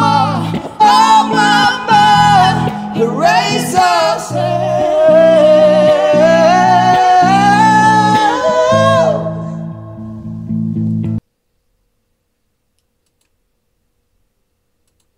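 A man and a woman singing a duet over strummed electric guitar chords. The voices stop about nine seconds in, the guitar rings on for a couple of seconds more, and then the sound cuts off suddenly.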